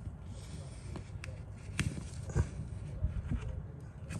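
Faint handling noises: light rustling and a few small clicks as gloved hands slide heat-shrink tubing over a red battery cable and its crimped lug.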